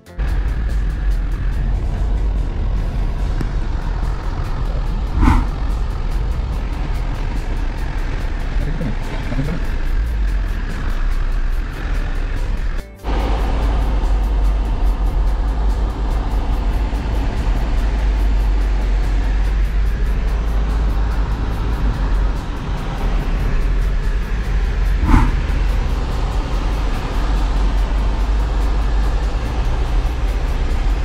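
A car driving, with steady road and wind noise and a deep rumble heard from inside the cabin. The noise breaks off for a moment about midway, and two short tones stand out, one about five seconds in and one near the end.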